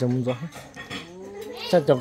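Conversational speech, broken by a pause about half a second in during which a faint drawn-out cry rises slowly in pitch before the talking resumes near the end.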